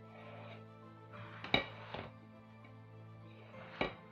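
Background music over a pastry brush swishing egg wash onto raw dough. A brush or pan knocks sharply against a metal baking pan twice, about a second and a half in and again near the end.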